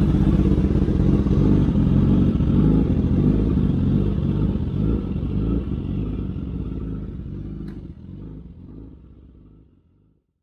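Sport-bike engine idling just after being started, steady, then fading out over the last few seconds. A single short click sounds near the end.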